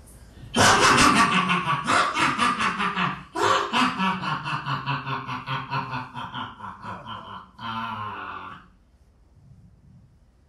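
Loud laughter from about half a second in, going in a rapid ha-ha-ha rhythm with a brief catch of breath around three seconds, a last burst near the end, then it stops.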